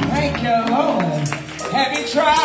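Live gospel praise music: a woman's voice leading through a microphone over a church band, with steady drum and percussion hits.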